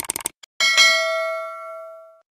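Animated end-screen sound effects: a few quick clicks, then a bright bell-like ding that rings on and fades away over about a second and a half, the kind of notification chime used with a subscribe-bell icon.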